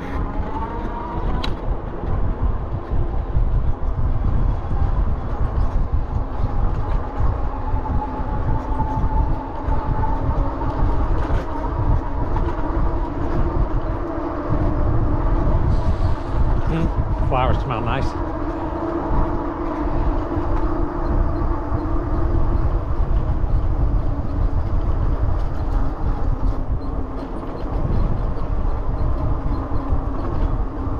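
Wind rumbling over the microphone of a handlebar-mounted camera on a moving bicycle, with a steady whine from the ride underneath it. A short high squeal cuts through about two-thirds of the way in.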